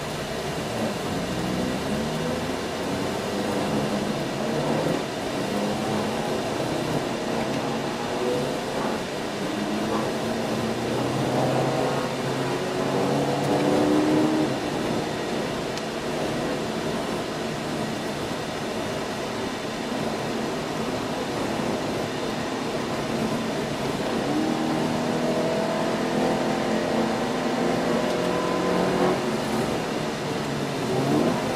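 Toyota GT86's 2.0-litre flat-four engine heard from inside the cabin, pulling under acceleration with its pitch climbing and then falling back at gear changes of the automatic gearbox, twice: around the middle and again near the end.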